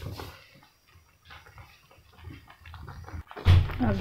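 Wooden spatula stirring bread slices in boiling milk in a steel pot: faint scrapes, clicks and bubbling. About three seconds in comes a sudden loud thump.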